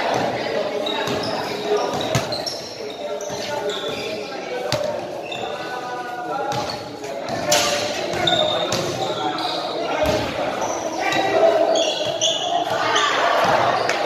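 Basketballs bouncing on an indoor court, scattered single thumps, under the voices of people talking and calling out, echoing in a large gym hall.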